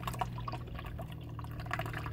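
Tea energy drink poured in a thin stream from an aluminium can into a plastic cup, the liquid trickling steadily as the cup fills.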